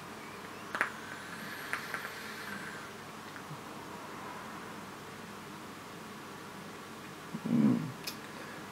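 A long drag on a mechanical e-cigarette mod: a couple of faint clicks and a soft hiss of air through the atomizer as the coil fires, followed by a quiet breath out of the vapour. A short hummed "mm" near the end.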